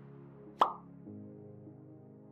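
Soft background music with sustained tones, changing chord about a second in. A single short, sharp pop cuts through a little over half a second in.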